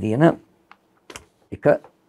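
A man's voice speaking in short phrases, with a pause in the middle broken by a couple of short clicks.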